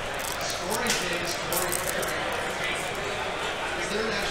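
Background murmur of a crowded convention hall, with soft rustles and ticks of trading cards and foil pack wrappers being handled on a table.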